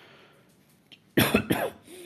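A person coughing: a short burst of two or three quick coughs a little over a second in.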